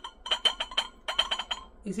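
A bird chirping: two quick runs of short, sharp chirps, about eight a second.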